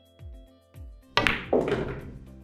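Pool cue tip striking the cue ball about a second in, hit a bit hard, followed a moment later by a second clack as the cue ball hits an object ball. Background music with a steady beat plays throughout.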